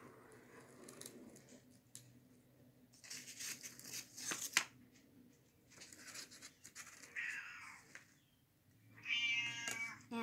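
A cat meows once near the end, a single call of about a second. Before it come soft rustling and scraping of corrugated cardboard strips being handled in a box, with one sharp tap about halfway through.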